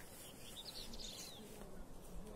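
A small bird chirping: a quick run of short, high, falling notes about half a second in, faint over outdoor background noise.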